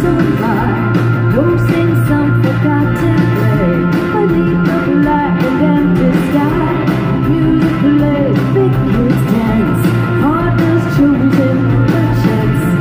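Live rock band playing through a concert PA, with a woman singing lead over electric guitar, bass and drums.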